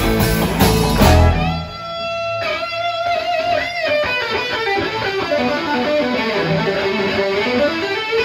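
Live blues-rock band playing, with drums, bass and electric guitar. About a second and a half in, the drums and bass drop out and an electric guitar plays on alone in a solo break, with bent and sliding notes.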